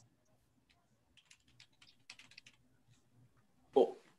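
Faint, scattered clicks of typing on a computer keyboard, then a brief burst of a person's voice near the end.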